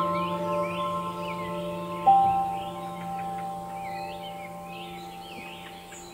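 Slow relaxation music of ringing, bell-like notes that slowly fade, with one new note struck about two seconds in, over birds chirping throughout.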